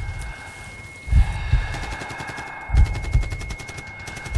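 Battle sound effects from a film soundtrack: muffled low thuds in pairs about every second and a half, under a steady high-pitched ringing tone and a fast faint rattle of gunfire.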